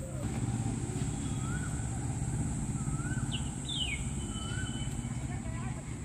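Outdoor ambience. A bird repeats a short rising-and-falling call about every second and a half, with a few quick falling chirps in the middle. Underneath runs a steady high-pitched insect drone and a low rumble.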